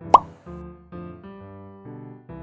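A quick rising 'plop' sound effect just after the start, the loudest thing here, over light background music of short chords that change every fraction of a second.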